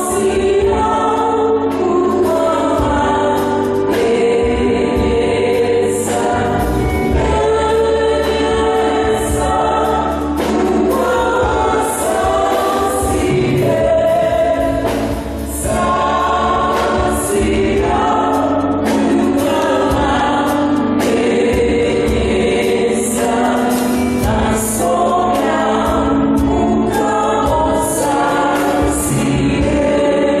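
Church choir singing a hymn with musical accompaniment, over a steady beat of high percussion about once a second.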